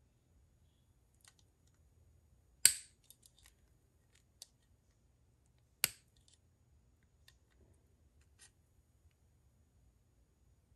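Metal clicks of jewelry pliers working a fork tine: two sharp clicks about three seconds apart, the first the louder, with faint small ticks and taps between and after.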